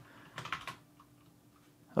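A few quick computer keyboard keystrokes about half a second in.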